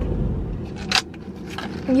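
Low, steady road rumble inside a moving car that drops away abruptly about half a second in, followed by a single short, sharp hiss about a second in.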